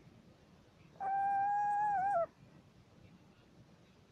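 Small owl giving one long whistled call about a second in, held on one pitch for just over a second and dipping at the end.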